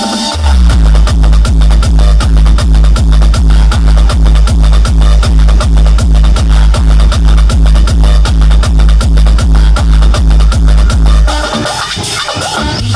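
Electronic dance remix played very loud through a truck-mounted DJ speaker rig: a fast, steady, heavy bass kick beat that comes in about half a second in and drops out near the end.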